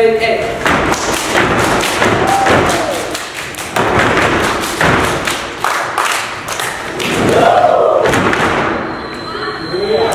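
A step team stepping in unison: a quick run of sharp stomps and hand strikes. Two long shouts rise and fall over it, one about two seconds in and one about seven seconds in.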